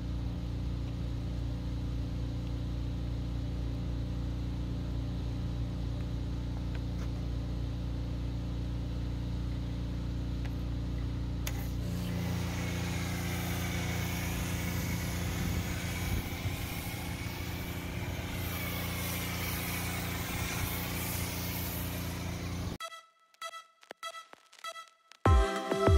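A pressure washer runs with a steady hum. About halfway through, the snow foam lance is triggered and the loud hiss of foam spraying joins in as the pump goes under load. Near the end the sound cuts off suddenly.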